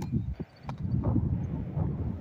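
Gusty wind buffeting the microphone, an uneven low rumble, with two sharp clicks in the first second.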